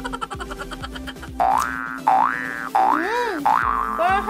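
Cartoon 'boing' sound effect: a string of springy tones swooping up and down, starting about a second and a half in, over background music.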